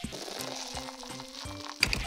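A can of Welch's sparkling orange soda being opened: a steady fizzing hiss, then a sharp metallic crack of the pull tab near the end.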